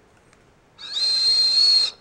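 A ring-shaped whistle candy blown through like a whistle. It gives one steady, high, breathy whistle about a second long, starting partway in.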